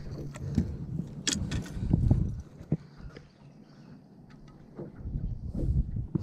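Irregular knocks, clicks and bumps of handling on an aluminium fishing boat's deck, with low rumbling thumps; quieter for a second or so near the middle.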